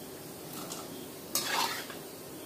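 Masala-coated peanuts frying in hot oil in a wok, with a steady soft sizzle. About one and a half seconds in, a slotted spatula scrapes and clatters briefly against the wok.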